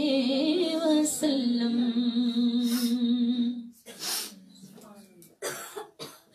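A woman singing a naat into a handheld microphone, holding one long note for about three and a half seconds. The level then drops, with two short breathy bursts into the microphone, one about four seconds in and one near the end.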